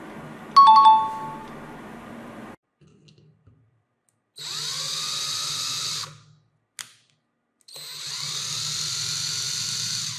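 A steel wrench strikes a nut with a short metallic ring about half a second in. Later a power drill runs in two bursts of about two seconds each, turning a bit in a screw head in wood, each burst spinning up as the trigger is pulled.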